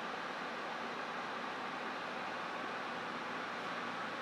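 Steady, even hiss of moving air, typical of grow-room ventilation fans, with no other events.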